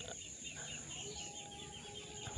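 Faint outdoor garden ambience: a rapid, even series of small high chirps, several a second, over a steady high hiss.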